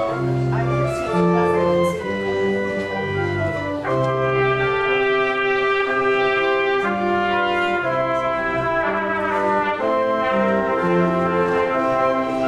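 Church organ playing a postlude: sustained full chords that change about every second over a moving bass line.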